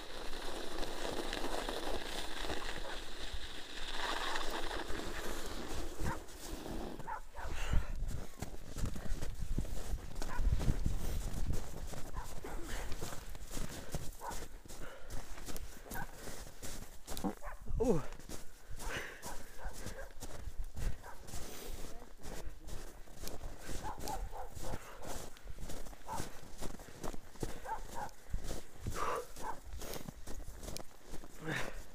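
Bicycle tyres hissing over packed snow for the first several seconds, then irregular crunching steps in snow and knocks from the mountain bike as it is pushed through deep snow.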